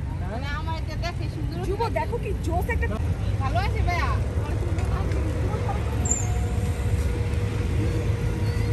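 Low, steady rumble of street traffic, growing louder as a tourist road train drives past close by. People talk in the first half, and a steady hum joins about five seconds in.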